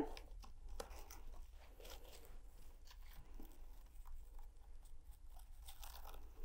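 Faint rustling and scratching of coarse twine being handled and worked into the tight wraps of twine on a wooden board, with a few small clicks.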